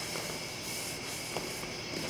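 Steady background hiss of room tone, with one faint tap about one and a half seconds in.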